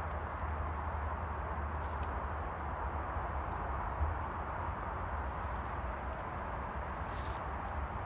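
Footsteps through brambles and leaf litter, with a few faint crackles of twigs, over a steady rushing background with a low rumble.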